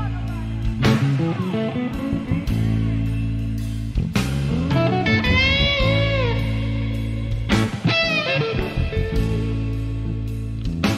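Slow blues lead on a white Fender Stratocaster electric guitar, single sustained notes that bend up and fall back, over held low backing chords from a live band.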